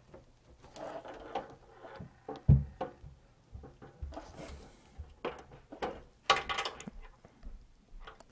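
Pen scratching in short strokes on notebook paper, mixed with soft knocks and rustles of handling, and a single low thump about two and a half seconds in.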